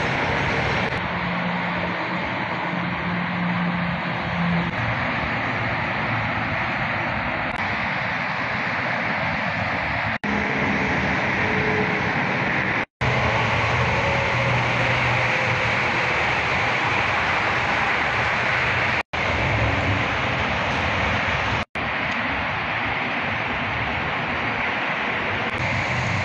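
Steady outdoor background noise on a phone microphone, a constant rushing haze with a faint low hum. It cuts out abruptly for an instant four times.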